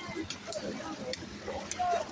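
Faint voices of several people talking in the background, with a few short, sharp ticks.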